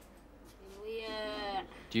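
A woman moaning in pain, one drawn-out high cry of about a second that falls slightly in pitch. It is the pain of an operation borne without painkillers.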